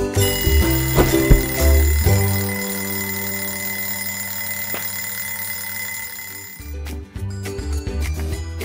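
Cartoon alarm clock bell ringing steadily over background music, stopping about six and a half seconds in; music with light percussive hits follows.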